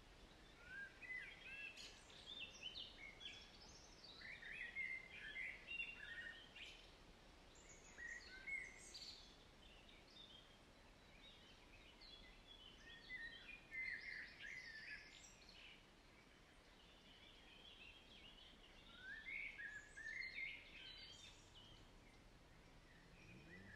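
Faint birdsong: clusters of quick high chirps and short phrases, coming in four bouts with pauses between, over a faint steady background hiss.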